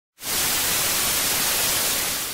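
Analogue TV static hiss: a loud, steady, even noise that starts abruptly a moment in.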